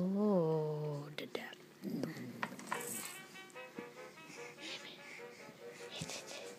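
Electronic tune from a baby's plastic musical activity table, short bright notes repeating several times a second, with a few knocks of hands on the toy's plastic in the first few seconds.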